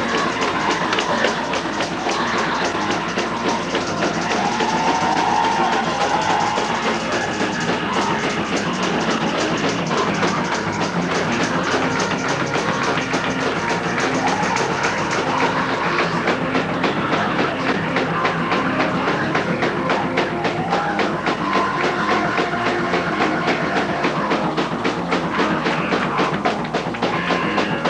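Fast gospel praise-break music: a drum kit plays a fast, steady beat, with tambourine and hand clapping.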